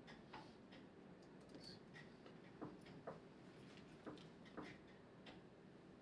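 Near silence of a quiet room, broken by faint, irregular clicks and taps, a few of them sharper about halfway through.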